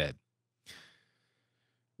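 A single short breath drawn into a close microphone in a pause between sentences, fading within a fraction of a second, after the tail of a spoken word.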